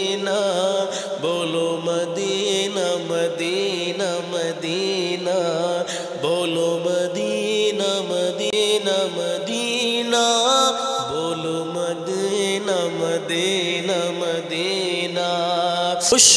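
Male voice singing a naat, an Islamic devotional song in praise of the Prophet, in long drawn-out melodic lines.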